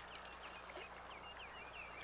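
Faint small-bird chirps: a scatter of short, quick high notes, over a low steady hum.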